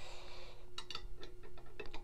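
Light metallic clicks of a steel box-end wrench on the pump's housing bolts as they are tightened, a quick run of them in the second half.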